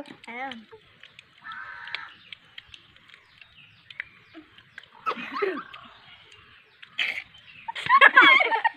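Brief, scattered children's voices, short murmurs and exclamations, with quieter gaps between them.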